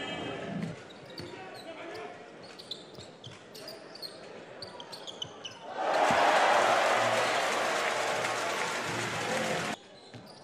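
Basketball game sounds on a wooden court: a ball bouncing and sneakers squeaking. From about six seconds in, a crowd cheers loudly, and the cheering cuts off abruptly just before the end.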